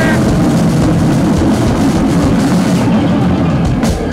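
Live rock band playing at full volume: a dense, unbroken wall of distorted guitar, bass and drums. It breaks off briefly near the end as the next part starts.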